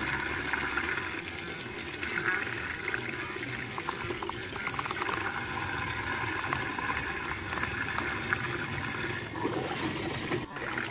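Muddy water swirling and gurgling down the open drain hole of a whirlpool vortex, a steady sucking rush with many small splashes and glugs as a floating toy car is pulled into the funnel.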